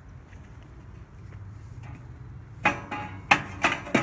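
Four sharp knocks in quick succession in the second half, from the flavorizer bars inside a Weber Spirit II E-210 gas grill being handled, over a faint low steady background noise.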